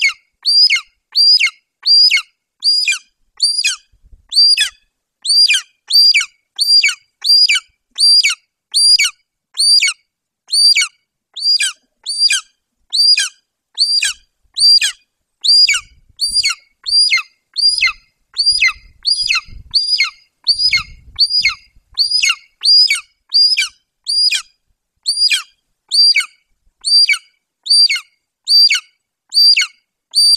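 Golden eagle nestling near fledging giving its begging call over and over: short, high, piercing notes that fall in pitch, about three every two seconds without a break.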